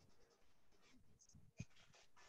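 Near silence between speakers on a video call, with one faint short thump about one and a half seconds in.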